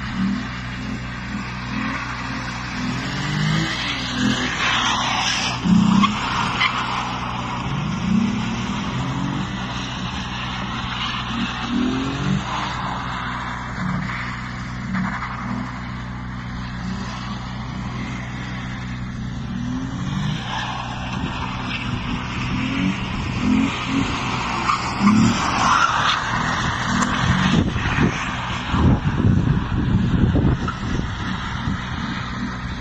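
A drift car sliding on tarmac: its engine revs up and down again and again, with tyres squealing in spells, loudest about five seconds in and again near the end.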